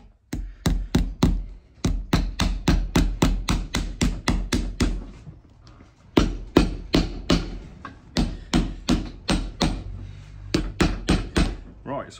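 Cobbler's hammer driving iron hobnails into a leather boot sole: quick, steady strikes, about four a second, in two runs with a short pause near the middle.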